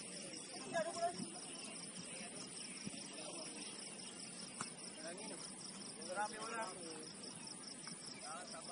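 Crickets chirping steadily in a continuous, evenly pulsed high trill, with faint distant shouting voices about a second in and again around six seconds in.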